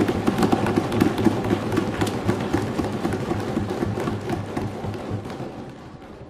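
Applause from a seated audience: many people clapping and thumping, dense and continuous, dying away over the last couple of seconds.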